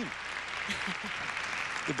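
Arena audience applauding steadily after a figure skating performance.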